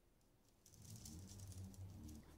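Faint scratchy rattling of painting tools being handled off the canvas, starting about half a second in, with a faint low hum under it.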